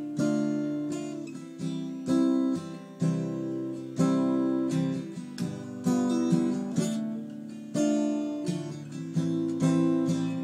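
Steel-string acoustic guitar played as a solo intro: a chord is strummed about once a second, and each one rings out and fades before the next.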